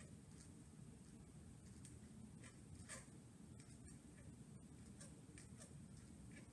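Faint scratching of a pen or pencil writing on paper, short strokes scattered irregularly, the clearest about three seconds in, over quiet room tone.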